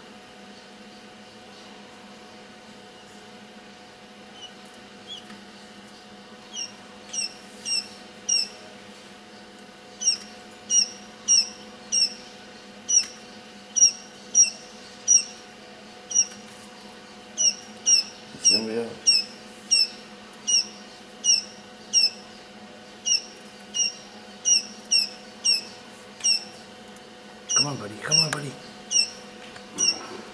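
Newly hatched Japanese quail chicks peeping: a long run of short, high chirps, each sliding down in pitch, coming about two a second from a few seconds in, over a steady low hum.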